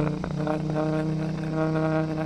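Motorcycle engine sound put through AI speech enhancement, which turns it into a warped, voice-like drone: a steady low hum, joined about half a second in by a held, vowel-like tone.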